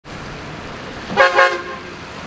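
Two quick toots of a 2020 Chevy Silverado 3500 HD pickup's horn about a second in, over a steady low rumble of the truck and road.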